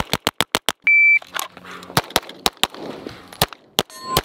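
Rapid pistol fire from an Atlas Gunworks Athena Tactical 9mm 2011: a quick string of about six shots, then a shot timer's short high beep about a second in, followed by another string of shots spaced less evenly.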